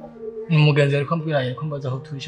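A voice, loud and pitched, starting about half a second in, over background music with steady held notes.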